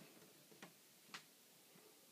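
Near silence with two faint clicks about half a second apart.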